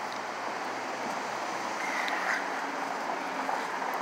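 Steady city background noise, a hum of distant traffic with some wind on the microphone, with no distinct event in it.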